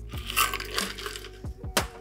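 A shaken cocktail being strained from a metal shaker tin into a glass over ice: liquid pouring with ice rattling in the tin, then a couple of sharp metallic clinks about a second and a half in.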